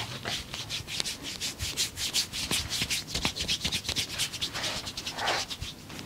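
Hands rubbing fast over bare skin in a massage of the upper arm, a quick even run of hissing friction strokes, about seven a second, that stops just before the end.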